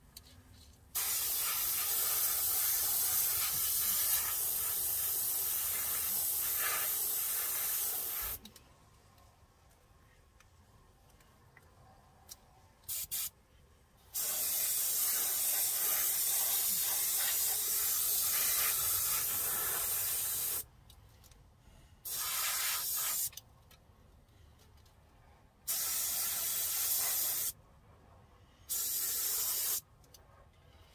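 Gravity-feed airbrush hissing in bursts as its trigger is pressed and released, spraying thinned enamel onto a model car body: two long passes of about seven and six seconds, then a few shorter ones of a second or two near the end.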